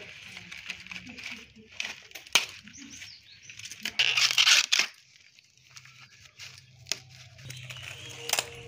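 Green husks being torn off fresh corn cobs by hand: crisp ripping and rustling of the leaves with a few sharp snaps, the longest and loudest rip about four seconds in.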